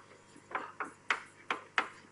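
About five sharp, irregularly spaced taps of chalk striking a blackboard as short strokes are drawn.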